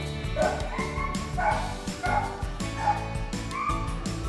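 A dog barking repeatedly, about six barks, over background music with a steady beat.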